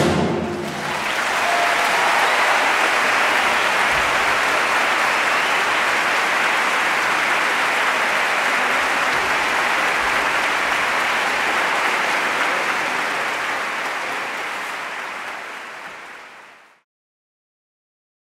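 Concert-hall audience applauding, with the last of the orchestra's final chord dying away at the start. The applause swells about a second in, holds steady, then fades and cuts off suddenly near the end.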